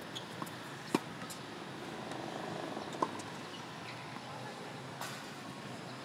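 Tennis rally: sharp pops of a racket striking the ball about a second in and again about two seconds later, with fainter pops of ball hits and bounces between. A steady background hum runs underneath.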